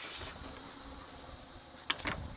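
Steady background hiss with one short, sharp click near the end.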